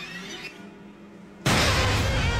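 Horror trailer soundtrack: a quiet, tense low background, then about one and a half seconds in a sudden loud jump-scare sting, a crash of music with wavering high tones over it.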